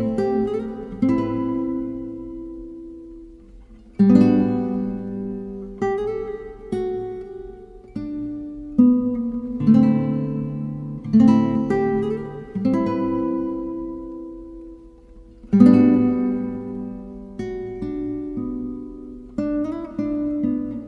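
Music: an acoustic guitar playing slow chords, each struck and left to ring out and fade before the next.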